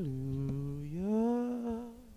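A man humming a slow, wordless melody into a microphone. He holds a low note, glides up to a higher held note about a second in, and that note fades out near the end.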